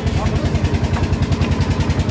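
Boat engine running steadily with a fast, even low chugging.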